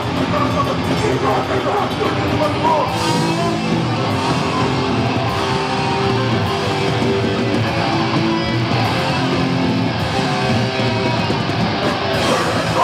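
Live punk rock band playing loud, with electric guitars, bass and drums.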